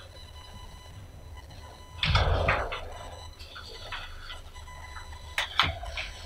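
Sheets of paper rustling and being handled as people read printed meeting minutes, a louder rustle with a low bump about two seconds in and two sharp clicks near the end, over a steady low room hum.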